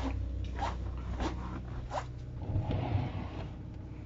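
Steady low hum of the motor coach's running generator, with a few light clicks and rustles and a brief low rumble about two and a half seconds in.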